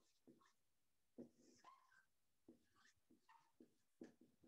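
Faint writing on a board: a run of short, irregular strokes with a few small squeaks.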